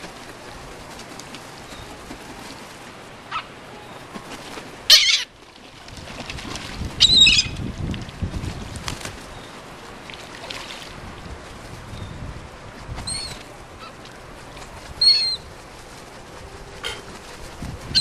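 Seagulls calling in short, sharp cries, with a few loud calls about five, seven, thirteen and fifteen seconds in, and wings flapping close by in between.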